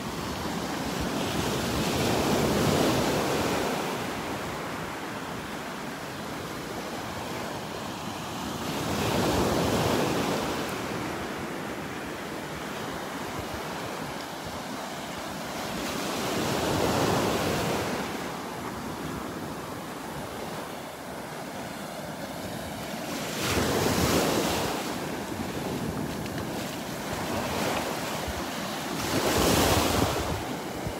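Small Gulf of Mexico surf breaking and washing up a sandy beach in slow swells, one about every seven seconds, five in all, with wind buffeting the microphone.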